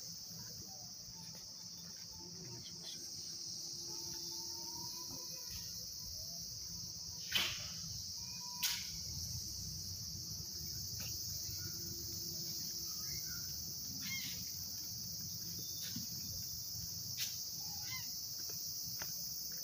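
A steady, high-pitched insect chorus of crickets trilling without a break. Two sharp clicks come about a second apart near the middle, over a low rumble.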